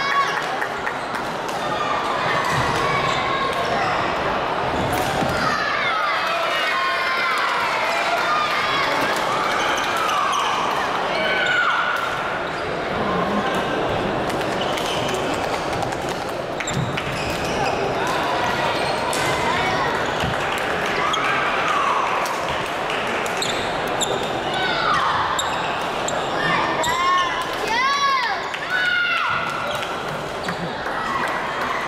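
Sports-hall sound of badminton play: rubber-soled shoes squeaking in short chirps on the wooden court floor, with sharp clicks of rackets hitting the shuttlecock, over a steady echoing babble of voices from the surrounding courts. One loud squeak comes near the end.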